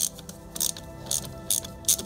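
A socket wrench on a 17 mm socket clicking in about five short bursts, a little over two a second, as it is swung back and forth to loosen a motorcycle's oil filter.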